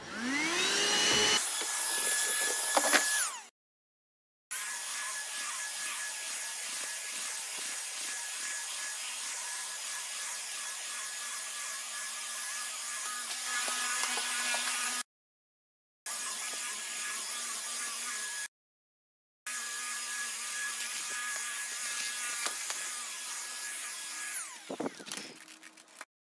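Bissell Bolt Lithium Pet 14.4 V cordless stick vacuum switching on with a rising whine, then running steadily with a high whine and a rush of suction as it is pushed over tile and a rug. It winds down with a falling whine near the end. It keeps running without cutting out, so the reported shut-off fault does not show.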